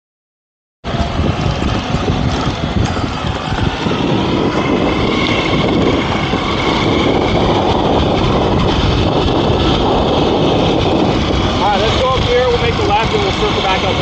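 Electric skateboard rolling on pavement, with heavy wind rush on the camera microphone and a thin steady high whine. The sound starts suddenly about a second in, and a voice comes in near the end.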